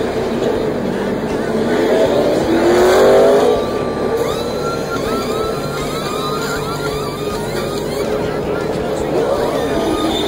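Race-car V8 engines on pit road, one rising in pitch as a car accelerates past, loudest about three seconds in. After that, pneumatic impact wrenches spin lug nuts off and on during a tire change, heard as a run of short rising and falling whines over the engine noise.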